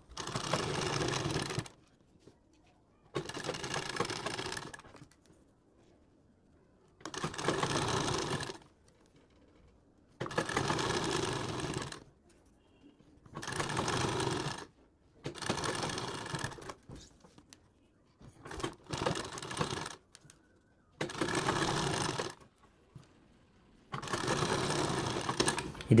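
Domestic straight-stitch sewing machine stitching a seam along the edge of a thin fabric sleeve piece. It runs in about nine short, even bursts of one and a half to two seconds each, with silent gaps between.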